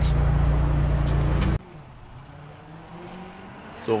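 A loud, steady low mechanical drone, like an engine running at an even speed, stops abruptly about one and a half seconds in. What follows is a much fainter engine sound, as if heard from a distance.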